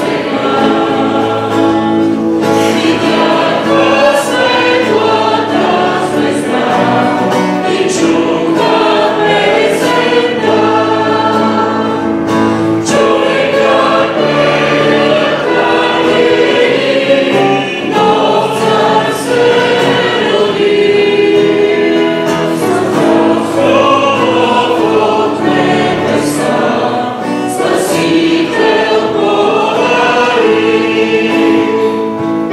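A hymn sung by several voices together, accompanied by digital piano and acoustic guitar.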